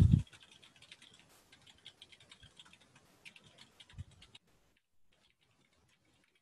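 Computer keyboard typing: a quick run of key clicks that stops about four seconds in, after a brief low thump at the very start.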